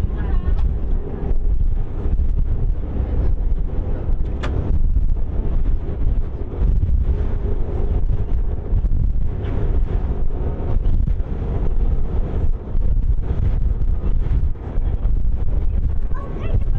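Wind buffeting the microphone on the open deck of a moving ferry, a loud, gusty low rumble mixed with the ferry's running noise and wash.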